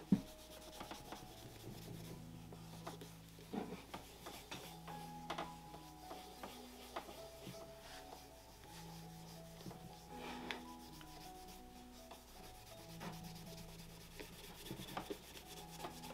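A cotton ball soaked in acetone rubbed back and forth over a leather dress shoe to strip its finish: faint, irregular rubbing strokes. Soft background music with held notes plays underneath.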